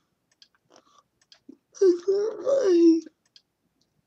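A young woman's voice: one stretch of slurred, hard-to-make-out speech about a second long near the middle, her speech affected by cerebral palsy. A few faint clicks come before it.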